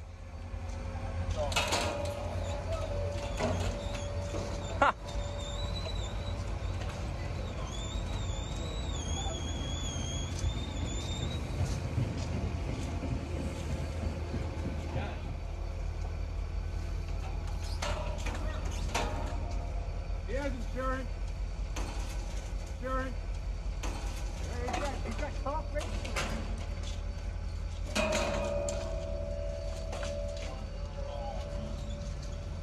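Steady low engine rumble from the idle cable train, with a sharp snap about five seconds in as the spent fiber-optic cable's last coils spring loose from their reels. People's voices can be heard now and then.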